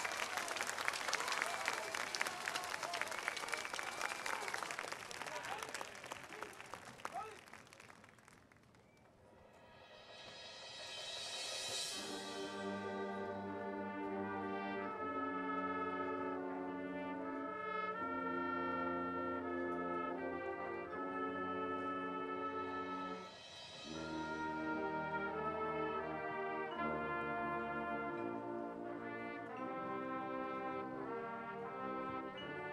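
Applause from the stands fades away over the first several seconds. A cymbal roll then swells up and the marching band's brass section comes in with slow, held chords, with another cymbal swell about two-thirds of the way through.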